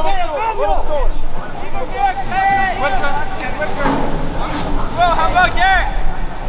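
Shouted calls from several voices around an outdoor soccer game, coming in short bursts at the start, about two seconds in and near the end, over a steady low rumble.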